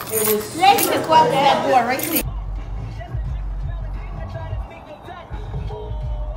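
Restaurant chatter with light clinking and bag rustle as food is packed to go. About two seconds in, it cuts abruptly to a moving car's cabin: a steady low road rumble with faint voices or music over it.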